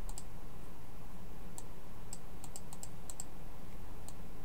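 Short, sharp computer clicks, some in quick press-and-release pairs, about ten in all and bunched together a little past halfway, over a steady low background hum.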